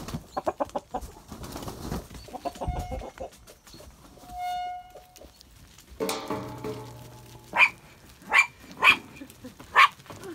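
Chickens clucking and flapping as roosters rush out of a shed, with one drawn-out chicken call about halfway through. In the second half a small dog barks four times, sharp and loud, as a flock of sheep is driven along.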